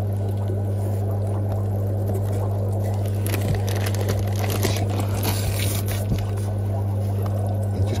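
Steady low electrical hum from fish-room equipment, with clear plastic fish bags crinkling now and then as they are handled.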